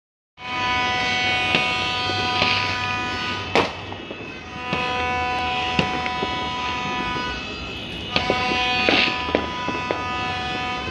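Fireworks going off: scattered sharp bangs and crackles, the loudest about three and a half seconds in. Behind them a steady, held tone drones on, cutting out for about a second just after the big bang.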